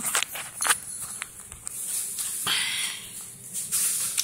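Scattered light taps and clicks, then two short rustling scuffs: movement close to the microphone, with footsteps and handling noise.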